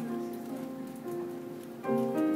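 Live music from a small ensemble led by a keyboard: sustained notes that change every half second to a second, over a light crackle of small ticks.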